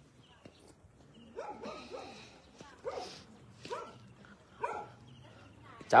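A dog barking: a quick run of barks about a second and a half in, then three single barks spaced about a second apart.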